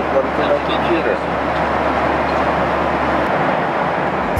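Steady airliner cabin noise in flight, the even rush of engines and airflow, with faint voices in the first second. A low hum under it drops away a little past three seconds in.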